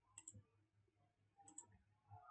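Faint computer mouse clicks in near silence: two quick pairs of clicks about a second apart, from selecting an item in a dropdown menu and closing a dialog.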